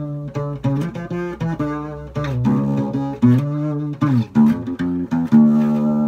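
An old acoustic guitar played unplugged: a riff of picked notes and chords that ring out one after another, with a slide in pitch about four seconds in.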